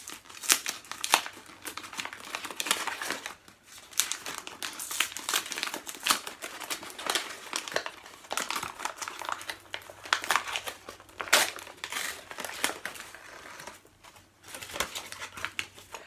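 Gift wrapping paper crinkling and tearing as a small present is unwrapped by hand, in dense, irregular crackles.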